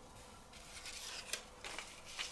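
Faint rustling of paper pattern pieces being slid and shuffled by hand across a tabletop, with a small click past the middle.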